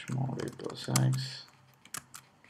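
A man's voice speaking for just over a second, then a few separate computer-keyboard keystrokes near the end as a command is typed.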